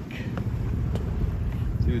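Wind buffeting the microphone on an open sailboat deck, a steady low rumble, with two faint clicks about half a second and a second in.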